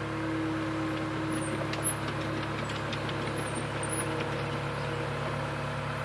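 Diesel engine of a Terex PT110F compact track loader running steadily as the machine moves slowly on its rubber tracks.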